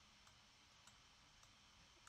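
Near silence: room tone, with one faint computer mouse click about a second in.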